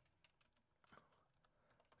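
Faint computer keyboard typing: a few scattered keystrokes, almost silent between them.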